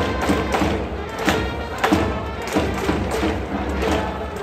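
A Japanese pro-baseball cheering section playing a batter's fight song, trumpets over repeated drumbeats.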